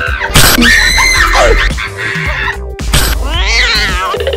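Loud screaming over comedy background music, with a sharp hit about a third of a second in and another near three seconds, the last cry rising and wavering.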